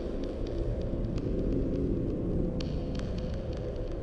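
A low, steady droning hum, with a few faint light ticks over it.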